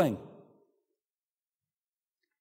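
A man's voice ending a word, falling in pitch and fading out within the first half second, then dead silence.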